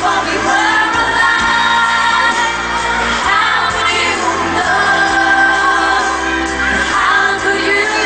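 Live pop song: women singing into microphones over the music.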